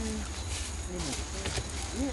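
Faint voices of several people talking in the background over a steady low rumble, with a few sharp clicks.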